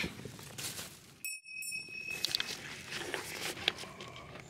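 A bright bell-like chime sound effect about a second in: one clear ringing tone with higher overtones that fades after about a second, dropped in at a cut. Around it, faint rustling and small clicks from the forest floor.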